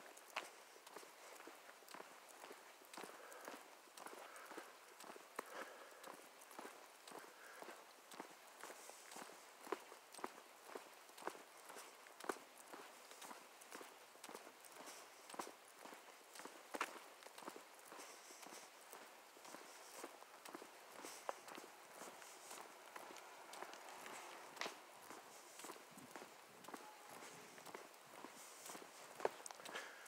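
Faint footsteps on an asphalt path, regular steps at a walking pace.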